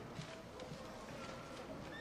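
Faint murmur of audience voices in a large gymnasium, with scattered light knocks and shuffles such as chairs and feet.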